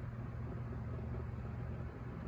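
Steady low background hum with no distinct events.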